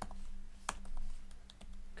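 Computer keyboard typing: a few scattered key clicks, one louder than the others under a second in.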